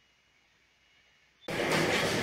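Near silence for about a second and a half, then a loud, steady rushing noise starts abruptly.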